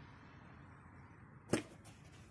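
BMX bike tyres rolling over concrete, then one sharp clack about one and a half seconds in as the bike strikes the edge of a concrete ledge box.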